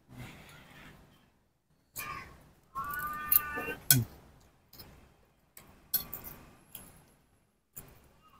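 Metal spoon and fork clinking and scraping against a ceramic plate of noodle soup while eating, with a few sharp clinks spread through. A short hummed "hmm" of someone tasting comes about four seconds in.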